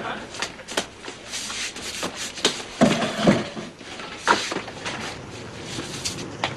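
A wooden front door being unlocked and opened: a scatter of short clicks and knocks, with a tail of studio audience laughter at the very start.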